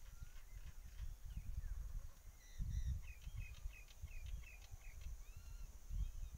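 Small birds chirping outdoors in short, quick, repeated calls, over a low gusty rumble.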